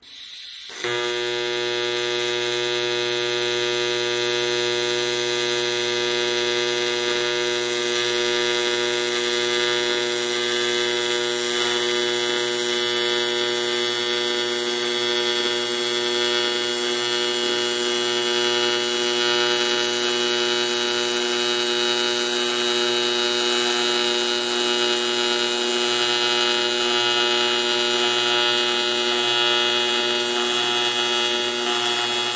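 AC TIG welding arc on 4 mm aluminium sheet at 134 amps, a steady buzzing hum that strikes at the start and steps up just under a second in, then holds even as the overhead corner joint is welded.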